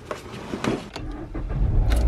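Handling clicks and rustling, then a car engine starting about a second in and settling into a low idle.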